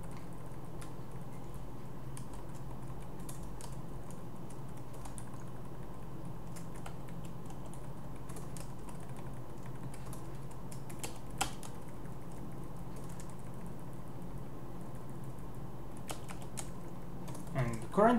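Computer keyboard typing: scattered, irregular keystrokes with gaps between them, one a little louder about eleven seconds in, over a steady low hum.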